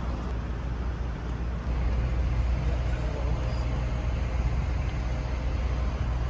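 Steady low rumble of road traffic or a moving vehicle, getting louder about a second and a half in.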